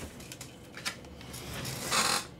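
A sleeved trading card being slid into a rigid plastic toploader: a few light plastic ticks and rustles, then a longer scraping slide that builds and is loudest near the end.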